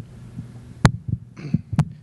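Microphone handling noise between speakers: two sharp knocks about a second apart, with smaller bumps between them, over a steady low hum.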